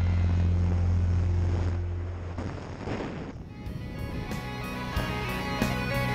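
Background rock music: a sustained, droning passage fades out over the first few seconds, then a new track begins about three and a half seconds in with a steady beat.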